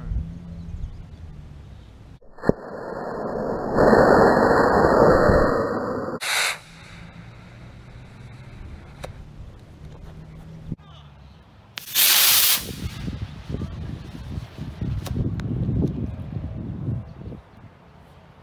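Model rocket launch on an A8-3 black-powder motor: a sharp crack about two seconds in as it ignites, then a loud rushing hiss lasting a few seconds. A second short, loud burst of noise comes about twelve seconds in.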